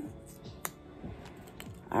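A single sharp click about a third of the way in, then a few fainter ticks near the end, from hands handling a plastic injection pen and its needle cap.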